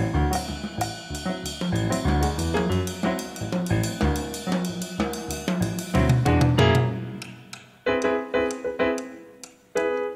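Drum kit played with sticks, with kick and snare hits, over keyboard chords. About seven seconds in the drumming stops, and a single keyboard chord rings out and fades.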